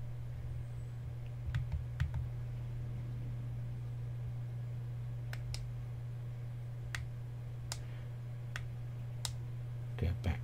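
Push-buttons of a Smok Guardian III vape mod clicking as they are pressed to step through its menu. About nine single, sharp clicks come at uneven intervals over a steady low hum.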